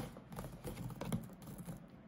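Twine being untied from a cardboard gift box: fingers working the knot and pulling the cord across the card and box lid, giving a string of small, irregular rustles and taps.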